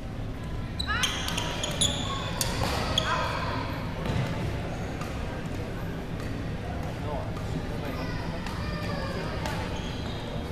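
Badminton rally on a hardwood gym floor: a quick run of sharp racket strikes on the shuttlecock and short squeaks of court shoes, mostly in the first three seconds, with a few more near the end.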